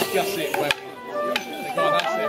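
Morris dance tune on a woodwind, with three sharp wooden knocks of the dancers' sticks striking in time with the music, about two-thirds of a second apart.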